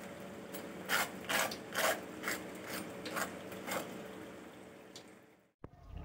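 Crisp deep-fried spring roll wrapper crackling and crunching as a fork presses and breaks into it, a series of about eight irregular sharp crunches that grow fainter, the sign of a well-fried, crisp shell. The sound cuts off abruptly shortly before the end.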